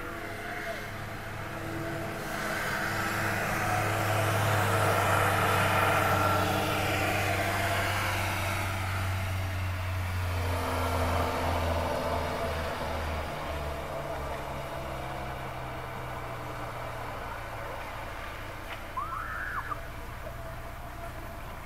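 A motor vehicle drives slowly past, its low engine drone growing louder over the first few seconds and fading away after about ten seconds. A short high call sounds near the end.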